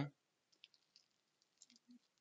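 Near silence with a few faint, short clicks scattered through it.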